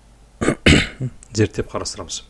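A person clears their throat with a harsh burst about half a second in, then says a few words.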